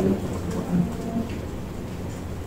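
Steady low rumble of room noise in a pause between words, with faint murmurs of voices.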